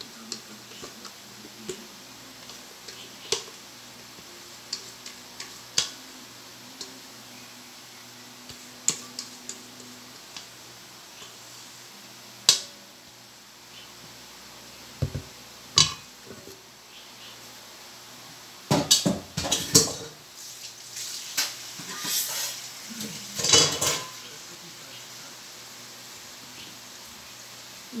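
Metal scraping and tapping on a stainless steel pot as cake batter is poured out into a foil tray. Scattered light clicks come first, then a run of louder scraping and clatter about two-thirds of the way through.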